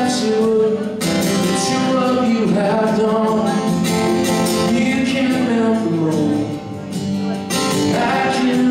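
A man singing live while strumming a steady rhythm on an acoustic guitar.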